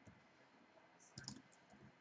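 Near silence, with a brief cluster of faint clicks from a computer keyboard a little over a second in as a number is keyed into a spreadsheet.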